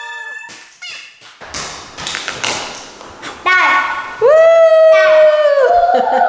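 A few knocks and taps with breathy noise, then two long, loud, high-pitched held shouts from a voice, the second lasting more than a second.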